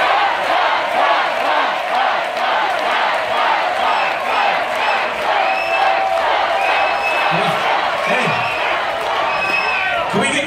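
Large audience cheering and shouting, many voices at once in a loud, continuous din, with shrill high whoops standing out over it in the second half.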